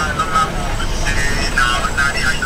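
Steady low rumble of a car's running engine, heard from inside the cabin, with indistinct voices from the street outside.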